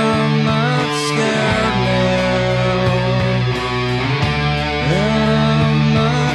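Distorted electric guitar in drop D tuning, a Schecter Hellraiser C-1FR, playing sustained heavy rock chords that slide from one position to the next. It is played over a full band recording with bass and drums.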